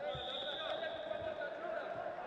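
Background chatter of voices, with two dull thuds, one just after the start and one about a second in, as heavyweight freestyle wrestlers hand-fight and step on the mat.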